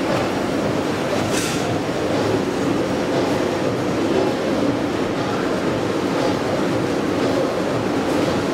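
Steady rumbling background noise, with a short hiss about a second and a half in.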